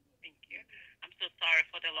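A woman's voice speaking over a phone's speaker, thin and narrow-sounding, starting about a quarter second in as she comes back on the line.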